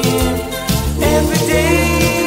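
Pop song playing: a steady bass beat under a held melody note that starts about a second and a half in.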